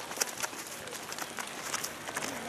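Several horses walking on a dry dirt trail: irregular hoof steps with light, scattered clicks.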